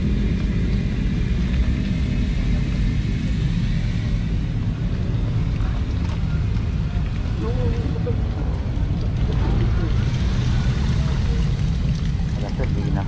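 A steady low rumble, with faint voices talking in the background.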